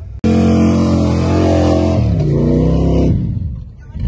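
A Jeep engine starts suddenly, already revved hard and held high while its tyres dig and throw sand. About two seconds in the revs drop away, waver and fade.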